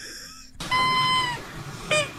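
A high, squeaky whistle held for nearly a second, then a shorter squeak near the end. It comes from a dog-toy squeaker that a boy has inhaled, sounding as he breathes, heard through a played-back phone video.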